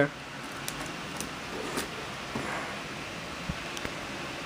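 Steady low hiss of room tone with a few faint, short clicks and taps scattered through it.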